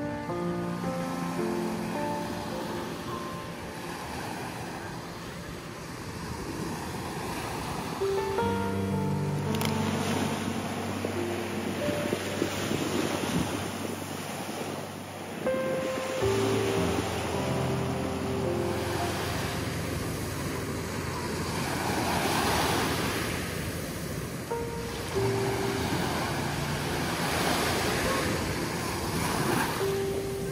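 Small ocean waves washing up a sandy beach, the swash swelling and fading every few seconds. A background music track of sustained chords plays over it.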